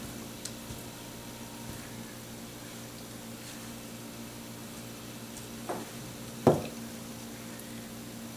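A steady low hum in the background, broken by a soft thump and then a single sharp knock about six and a half seconds in, as a small container is set down on a wooden table.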